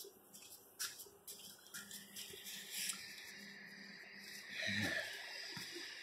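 Quiet scene: a faint steady hum with scattered light clicks and rustles as the phone is handled, and a short breath or grunt near the end.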